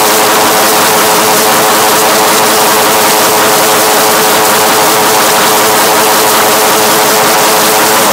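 A very loud, heavily distorted sound effect: a steady droning tone buried in harsh noise, held at one pitch and level without a break.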